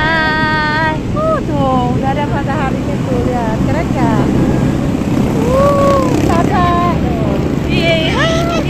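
Steady low rumble of an open jeep riding across beach sand, with voices over it.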